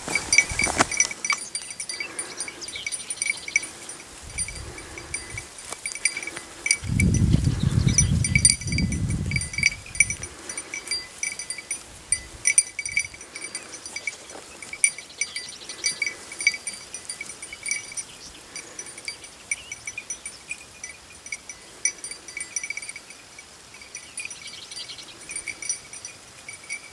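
A small metal bell on a hunting dog's collar jingling in irregular clinks as the dog moves about tracking scent. About seven seconds in, a louder low rumble lasts a few seconds.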